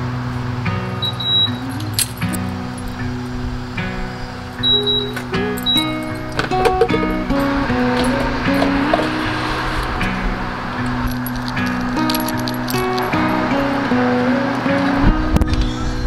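Background music, a melody of held notes moving from pitch to pitch over a steady bass; a brief laugh about five seconds in.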